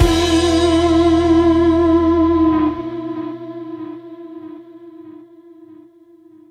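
The last held guitar note of a rock track, with vibrato, sustained over a low bass that cuts off about two and a half seconds in. The note then fades out slowly as the song ends.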